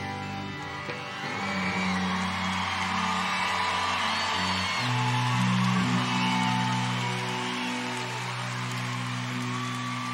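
A live rock band's electric guitars and bass hold sustained, ringing chords, moving to a new chord about halfway through, with crowd noise behind.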